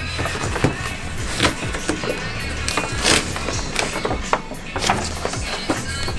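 Stiff paper crackling and rustling in short, sharp crinkles as a large folded poster is handled and unfolded, over background music.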